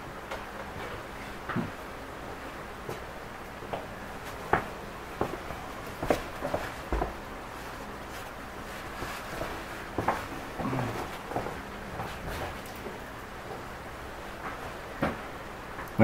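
A person moving about and handling gear: scattered light knocks and clicks, some of them footsteps, over steady room tone.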